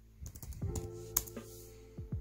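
Fingers typing on a Lenovo IdeaPad laptop keyboard: a run of irregular key clicks, one louder tap a little past the middle. Background music with held notes comes in about half a second in.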